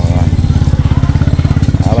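Small motorbike engine running steadily close by, a fast, even putter.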